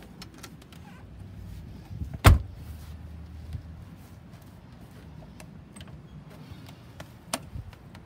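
Motorhome basement compartment door being unlatched and opened: one loud latch clunk a little over two seconds in, then a lighter click near the end, over a low steady hum.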